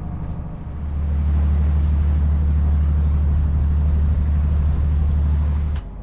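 Steady low drone of a Nordhavn 55 trawler's diesel engine running underway, heard from the pilothouse. About a second in it swells into a louder, even low rumble, which cuts off abruptly near the end.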